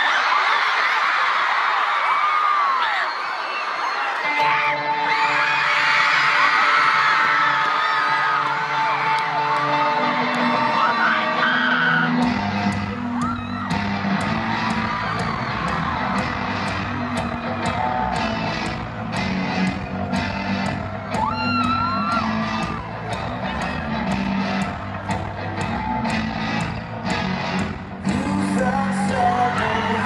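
Concert crowd screaming and cheering while an electric archtop guitar starts a song, with a held note and chords from a few seconds in. About twelve seconds in the full band joins with a steady drum beat, and fans keep screaming over the music.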